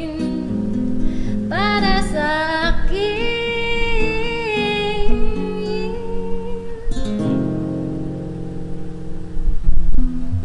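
A woman singing a bossa nova song with a cutaway classical guitar plucking the accompaniment; her voice slides into long held notes with a light vibrato. About seven seconds in the voice stops and the guitar carries on alone.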